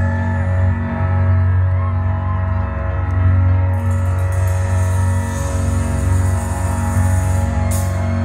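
Live band music heard from the audience: a deep, steady synth bass under long held keyboard chords. A bright hiss joins about halfway through, and sharp, evenly spaced beats start near the end.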